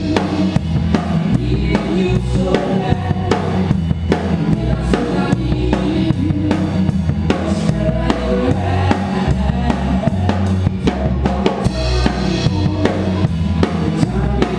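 Live band playing a song, heard from right beside the drum kit: a steady beat of drums and cymbals is loudest, over low bass notes and guitars.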